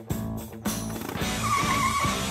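Cartoon background music with a motorbike sound effect: a wavering squeal like tyres skidding comes in over the music in the second half, as the cartoon minibike pulls up.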